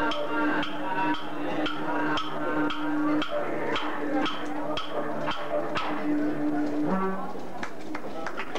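A man singing a traditional Aboriginal song into a microphone, holding long notes, over clapsticks struck in a steady beat about twice a second. The note drops near the end and the song stops.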